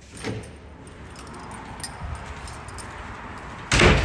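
A door's handle and latch working as the door is opened, with a few clicks, then a short, loud bang just before the end.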